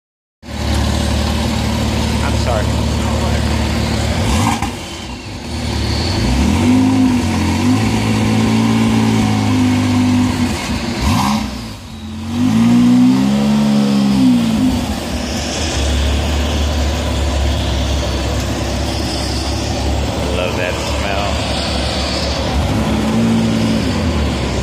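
Lykan HyperSport's twin-turbocharged flat-six running: idling, then held at raised revs for several seconds from about six seconds in, revved up and back down again around twelve to fifteen seconds, and settling to a steady idle.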